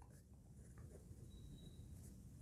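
Faint scratching of a ballpoint pen writing words on paper.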